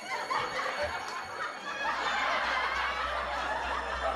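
Several people chuckling and snickering, with background music underneath; a steady bass from the music comes in about halfway through.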